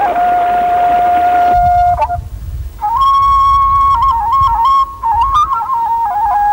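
Solo flute melody: a long held note, a short break about two seconds in, then a wavering tune moving in small steps of pitch, with a low rumble underneath.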